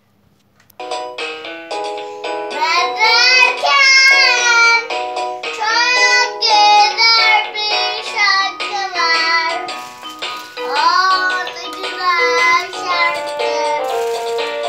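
A toy electronic keyboard playing a simple melody in stepped notes, starting suddenly about a second in, with a young child's high singing voice over it.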